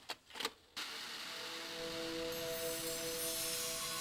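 A few short clicks as a videotape is loaded into a VCR, then, under a second in, a sudden steady hiss of the tape starting to play, with faint held tones over it for a couple of seconds.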